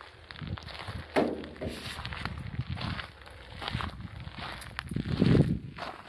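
Footsteps crunching on gravel, an irregular run of steps as someone walks along.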